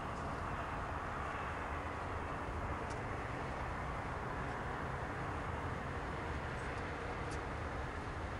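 Steady outdoor background noise: a low rumble with a hiss over it, and two faint ticks.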